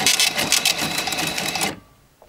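Cash-register sound effect: a rapid mechanical clatter of keys and till mechanism that stops suddenly near the end.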